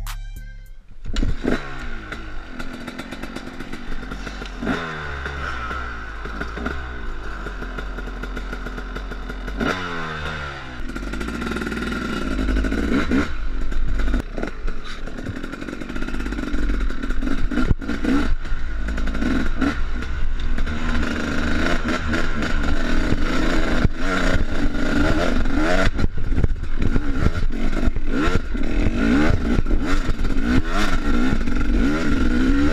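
A 2015 KTM 250 SX two-stroke dirt bike engine, heard from its handlebar-mounted camera while riding a trail. It revs up and drops again repeatedly as it goes through the gears, with clattering from the chassis over bumps, and it gets louder in the second half.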